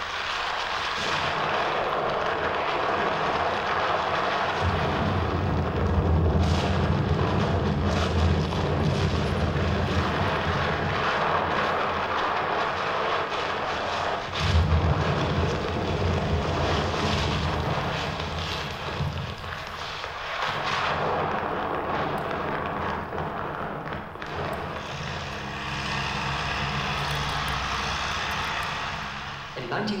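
Building demolition on a film soundtrack played over a hall's speakers: continuous loud noise of collapsing masonry with a low rumble, and a few sharper crashes.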